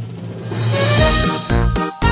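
Music: a low held tone swells and brightens, then about a second in breaks into a loud rhythmic passage with a heavy beat and short, chopped chords.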